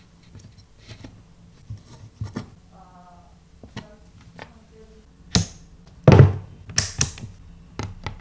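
Hands handling wires and test gear on a hard board: scattered light clicks and taps, a short squeak about three seconds in, then several louder thunks between about five and seven seconds in.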